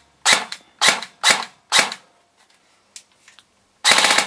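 Bolt BR4 Elite Force electric airsoft rifle with the Bolt Recoil Shock System, fired in single shots. There are four sharp shots in under two seconds, each with the gearbox cycling and the recoil weight kicking. A few faint clicks follow, then another shot near the end.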